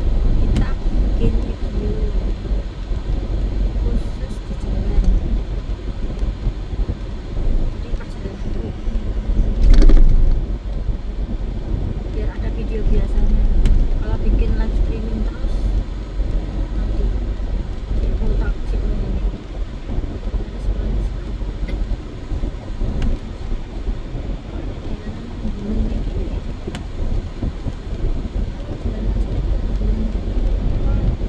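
Low, steady road and engine rumble heard from inside a moving car, with indistinct talk under it. A single sharp knock comes about ten seconds in.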